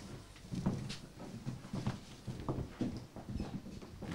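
Footsteps of several people walking in a narrow corridor: irregular knocks of shoes on the floor, several a second.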